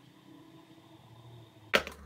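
Quiet room tone, then a single sharp knock near the end.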